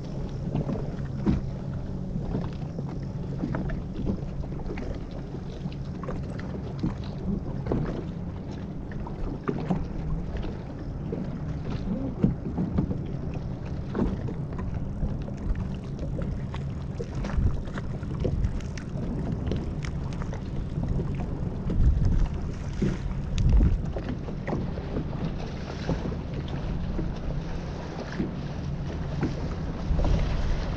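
A small motorboat's engine running at a steady low hum, with water slapping and knocking against the hull and wind buffeting the microphone; the loudest slaps come about twelve seconds in and again around two thirds of the way through.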